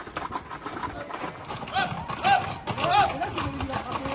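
Hooves of a group of Camargue horses clattering on the paved road as they run. About two seconds in, several short high-pitched shouts from people ring out in quick succession over the hoofbeats.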